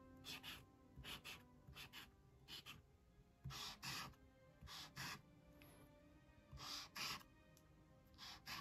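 Faint scratching of a Uni Posca paint marker's tip on sketchbook paper, in short strokes that often come two or three in quick succession.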